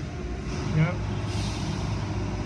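A steady low engine-like rumble, with a brief burst of hiss about one and a half seconds in.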